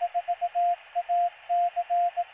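Morse code sent as a single steady tone over a bed of radio-style static hiss, spelling out the callsign KM4ACK. In these seconds the "4" (four dits and a dah), the "A" and the start of the "C" are keyed.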